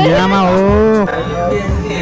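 A long, drawn-out moo-like call lasting about a second that drops off at the end, followed by shorter pitched calls.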